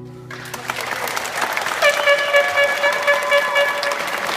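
The last strummed acoustic guitar chord rings out and fades, and audience applause starts and grows. About halfway in a long high-pitched call from the crowd rises over the clapping, with one bend in pitch.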